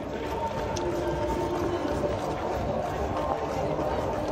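Steady street noise while running in a marathon field: a low rumble of moving air on a handheld phone's microphone, with footsteps and faint voices around.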